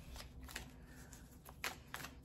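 Oracle cards being shuffled and handled by hand, with a few soft card clicks as one is drawn from the deck.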